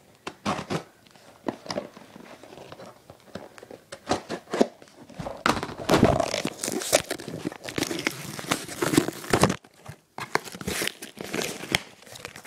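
A mailing envelope being torn open by hand and its packaging crumpled: scattered crackles at first, then several seconds of dense tearing and crinkling, a brief pause, and more crinkling near the end.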